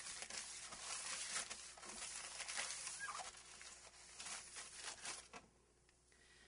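Crumpled newspaper wiping across a window pane sprayed with glass cleaner: a rapid, scratchy rubbing of paper on glass that stops about five seconds in.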